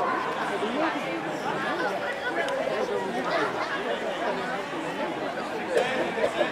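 Background chatter: several people talking at once, steady and unclear, with no single voice standing out.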